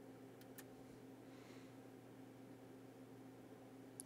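Near silence: a faint steady electrical hum from the bench equipment, with two faint clicks about half a second in.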